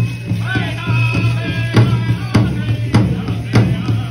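Pow wow drum group singing a side step song: high voices over a steady, evenly spaced beat on the big drum.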